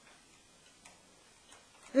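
Near silence in a pause between a man's speech, with a few faint, short clicks, then his voice starts again at the very end.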